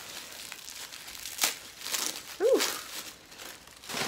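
Gift wrapping crinkling and tearing as it is pulled off by hand, with a sharp crackle about one and a half seconds in.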